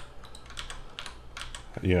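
Computer keyboard keystrokes: a scattering of quick, irregular key clicks.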